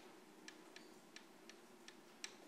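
Near silence with a run of faint, light ticks, about three a second and not quite evenly spaced.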